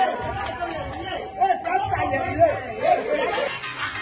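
Indistinct voices and chatter, with upbeat music coming in about three seconds in.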